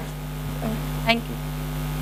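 Steady electrical mains hum from the stage sound system, with faint voices in the hall about half a second and a second in.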